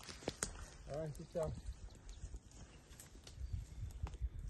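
A short voice sound about a second in, among scattered soft clicks and rustling close to the microphone, with low thuds near the end.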